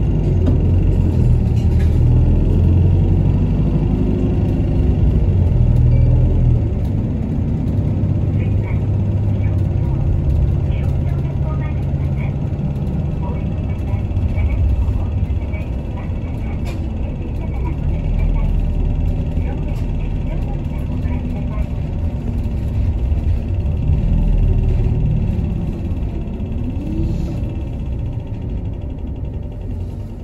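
Bus engine and road noise heard from inside the bus: a steady low rumble whose engine tone rises and falls as the bus speeds up and slows, easing off near the end.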